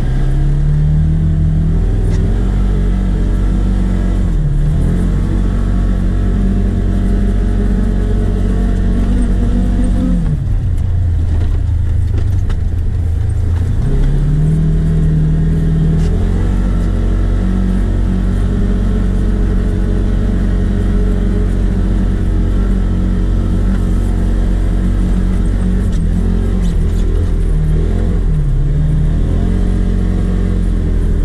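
A vehicle's engine running hard while being driven, its pitch rising and falling with the throttle. The pitch falls away about ten seconds in and climbs back around fourteen seconds.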